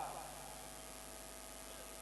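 Steady electrical mains hum with faint hiss from the microphone and sound system. The end of a man's word fades out at the very start.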